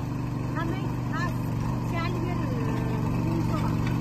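A small engine running steadily with an even low drone. Faint distant voices can be heard over it.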